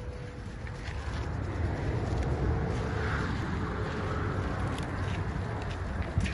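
Handheld percussion massage gun running, its head pressed against a person's body, giving a dense, low, buzzing rumble with a faint steady motor tone above it.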